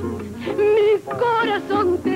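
A woman's singing voice holding long notes with wide vibrato over orchestral accompaniment, with a short break about a second in.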